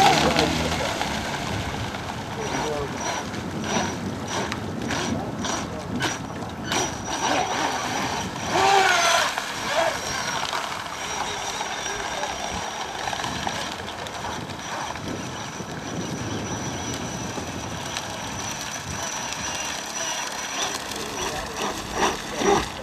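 Fast-electric RC rigger boat running at speed on open water: a thin, steady high motor whine over a steady rushing noise.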